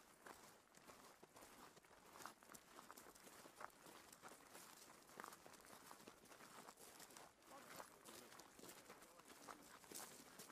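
Faint footsteps of two people walking on gravel, irregular crunching steps.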